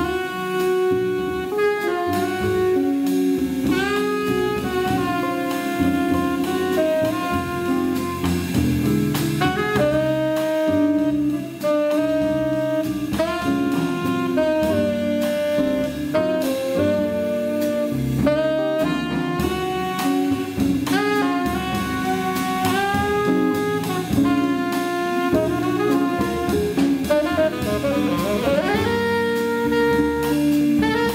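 Live jazz quartet: a tenor saxophone plays the melody in held notes over a drum kit with cymbals and bass accompaniment.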